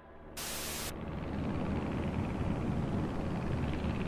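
Staged transition sound effect: a short burst of white-noise static about a third of a second in, then a dense, noisy rumble that swells steadily louder.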